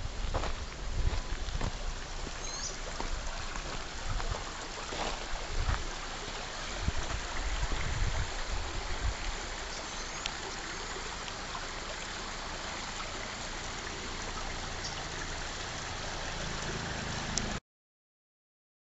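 Footsteps crunching on gravel and stones during the first half, over a steady outdoor rushing noise, with a couple of faint high chirps; the sound cuts off suddenly just before the end.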